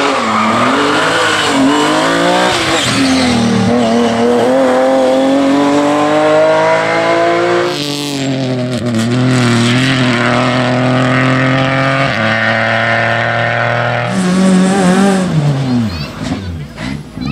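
Rally car engines at high revs, heard in several shots one after another. One climbs steadily in pitch under full throttle until about eight seconds in. Others then hold steady high revs, and the last one drops in pitch near the end.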